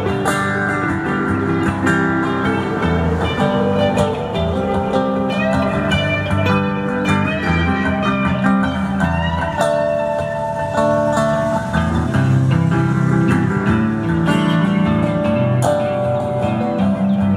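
An electric guitar and an acoustic guitar playing together live, an instrumental passage with no singing.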